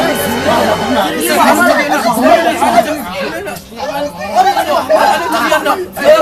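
Several young men's voices talking over each other in Moroccan Arabic, loud and agitated, as in a scuffle.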